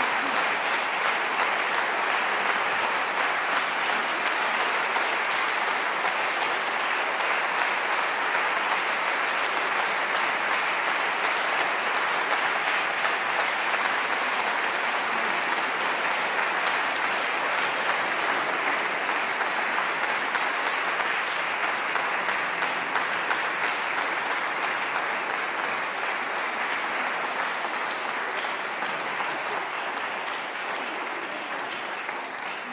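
Audience applauding steadily, a dense patter of many hands clapping, fading a little near the end.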